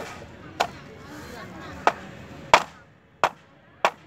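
Machete blade chopping into bamboo poles of a bamboo bier: about six sharp, irregular strikes, the loudest about two and a half seconds in.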